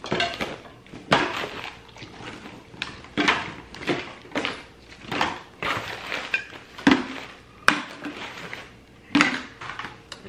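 Plastic bottles and toiletry containers being handled and dropped into a fabric bag: irregular rustling of the bag with knocks and clacks of bottles against each other, and one sharp click near the end.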